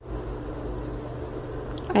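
Steady low mechanical hum with a faint droning tone and no distinct events.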